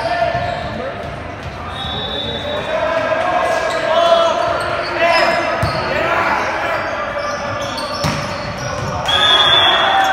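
Indoor volleyball rally in a gymnasium: several sharp, echoing hits of the ball against hands and arms, over the shouts and chatter of players and spectators. A referee's whistle sounds near the end, as the point ends.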